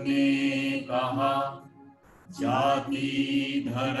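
A man and a woman singing a Hindi song together in two long sung phrases, with a short pause for breath about halfway through.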